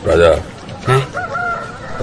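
A rooster crowing.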